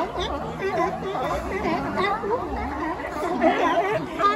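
A colony of California sea lions barking all at once, many loud overlapping calls rising and falling in pitch with no pause: a racket.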